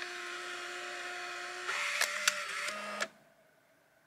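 Fujifilm Instax Mini Link printer feeding out a print: a steady motor whine that shifts in pitch partway through, with a couple of clicks, then cuts off suddenly about three seconds in as the print finishes ejecting.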